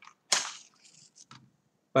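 A wooden match struck once, a sharp scrape about a third of a second in, followed by a brief fainter crackle as it flares and catches.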